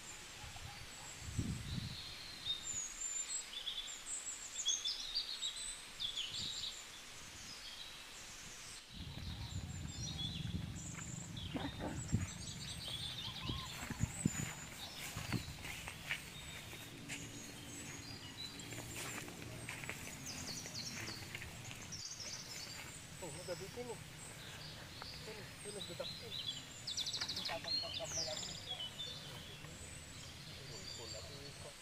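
Small birds chirping on and off over a faint outdoor background. A low rumble comes in about nine seconds in and stays to the end.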